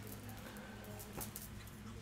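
Faint room tone with a steady low hum, in a pause between spoken sentences.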